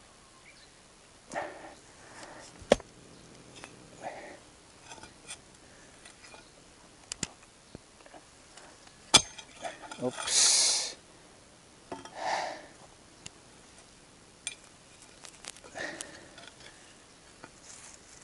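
Pickaxe working at a tree stub's roots: two sharp knocks several seconds apart, among scraping and rustling. Between strokes come the worker's heavy breaths and grunts of effort, one long loud exhale a little past the middle.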